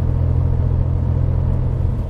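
Steady low drone of a DeLorean DMC-12's PRV V6 engine and road noise, heard inside the cabin while driving.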